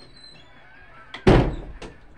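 A single loud thud about a second in, with a short click just before it and another just after.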